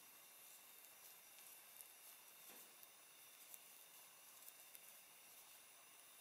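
Near silence: faint room hiss with a few faint ticks from knitting needles working stitches of fine yarn.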